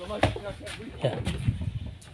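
A man's voice speaking briefly, a short "yeah", with low background noise.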